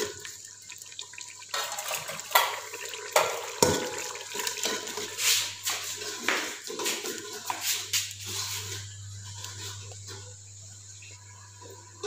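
Metal ladle stirring and scraping through frying onion-tomato masala in a metal cooking pot, the wet masala sizzling and squelching; a run of scrapes and knocks against the pot that dies down in the last few seconds, leaving a low hum.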